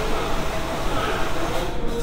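Escalator running, with steady mechanical noise from the moving steps and voices in the background.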